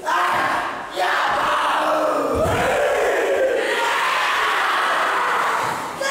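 A group of schoolboys performing a haka: many voices shouting a chant together in loud, sustained calls, with a short break about a second in. A low thud comes about two and a half seconds in.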